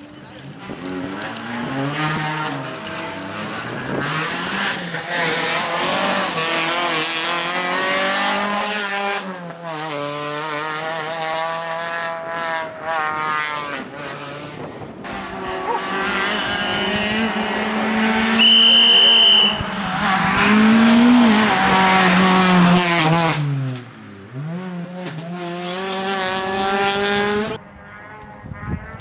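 Peugeot 206 rally car driven flat out on a tarmac stage, the engine revving high and dropping again and again with gear changes and lifts. A brief high squeal comes about two-thirds of the way through.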